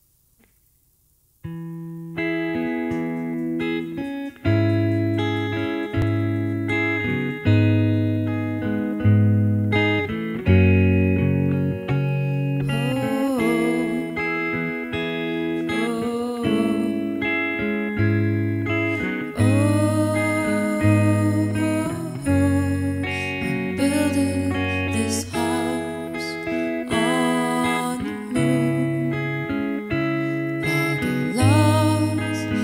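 Electric guitar playing a picked song intro, notes following one another in a steady rhythm, starting about a second and a half in after near silence. From about halfway, higher notes that bend in pitch join in.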